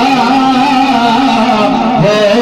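A man singing a naat into a hand-held microphone, holding one long, slowly wavering note that sinks a little near the end.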